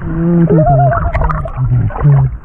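Snorkellers' voices underwater, humming and squealing through their snorkels: a low steady hum from the start, joined about half a second in by a higher tone that rises and then wavers.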